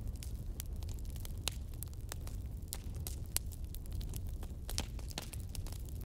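Low steady electrical hum and hiss with scattered faint clicks and crackle: the recording's background noise before anyone speaks.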